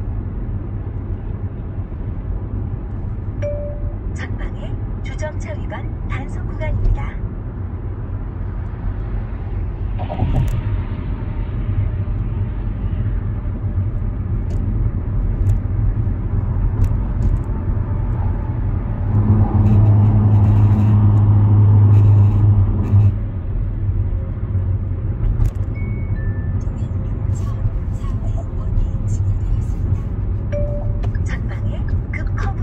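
Steady low road and engine noise inside the cabin of a Kia Seltos driving at highway speed. A louder low drone comes in for about four seconds about two-thirds of the way through.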